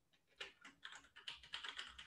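Faint, quick run of computer keyboard keystrokes, starting about half a second in: a password being typed.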